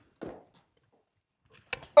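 Near silence, broken by a faint short rustle a fraction of a second in and a sharp click near the end. Right at the close a loud, drawn-out shout of "Oh!" begins.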